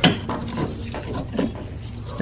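A sharp metal knock, then lighter clicks and rubbing of metal parts being handled as the engine's motor mount is worked into position.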